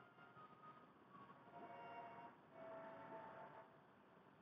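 Near silence through a Huawei FreeBuds Pro earbud microphone, whose noise cancelling all but removes a background sound played during the test. Only faint held tones come through from about a second and a half in.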